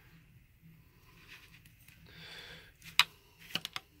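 A watercolour pencil scratching lightly on a plastic model for under a second, then a loud sharp click and a few smaller clicks as wooden pencils are set down and picked up from among the others.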